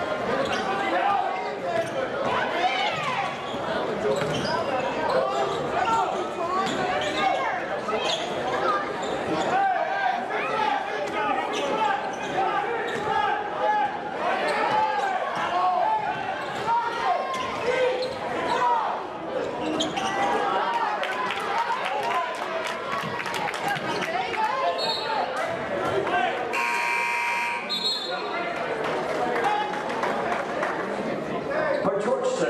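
Basketball being dribbled on a hardwood gym floor over steady crowd chatter. Near the end a scoreboard buzzer sounds once for about a second as play stops.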